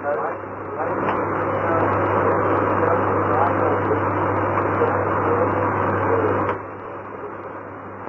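A person's voice asking a question, indistinct, on an old tape recording with a steady hum under it. The louder stretch of talk stops abruptly about six and a half seconds in.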